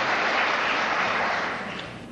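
Audience applauding, a steady clapping that dies away near the end.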